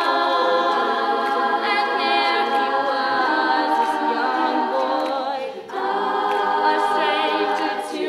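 Women's a cappella group singing, with a lead voice at the front microphone over close-harmony backing voices and no instruments. There is a brief break in the singing about five and a half seconds in.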